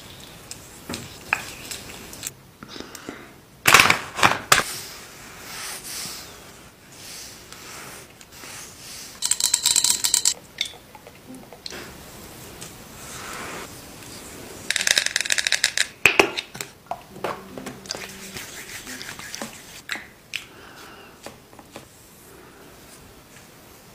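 Close-miked ASMR sounds of oiled hands on the face: soft rubbing and scattered sharp clicks, with two short bursts of rapid crackling clicks a few seconds apart.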